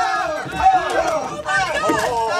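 Human voices making short wordless shouts and calls that rise and fall in pitch, with no clear words.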